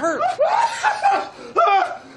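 Men snickering and laughing in short breathy bursts.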